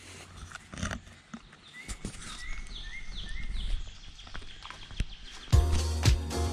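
Footsteps on a woodland trail, with a bird calling a quick series of about six short chirps in the middle. Upbeat music with a steady beat comes in about five and a half seconds in.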